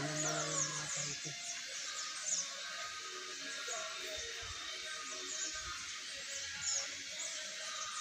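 Birds chirping: a steady run of many short, high-pitched, falling chirps.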